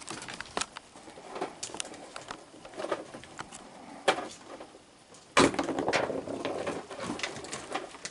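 Raccoons feeding on a wet wooden deck: scattered small clicks and crunches of chewing and food, with soft coo-like calls from the raccoons. About five seconds in comes a sudden louder burst of noise lasting a second or so.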